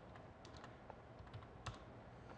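Faint computer keyboard keystrokes: a few scattered, separate key clicks against near silence.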